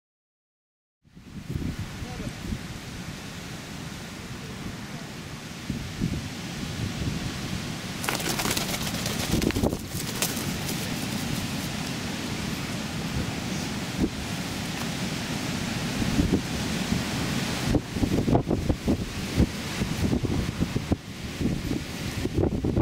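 Strong wind of about 40 mph buffeting the microphone, starting about a second in: a dense, uneven rumble that turns gustier and louder in the second half.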